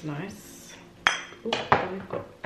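Skincare product bottles clinking and knocking against each other as one is set down and the next picked up: a sharp clink with a short ringing tail about a second in, then two more knocks close together.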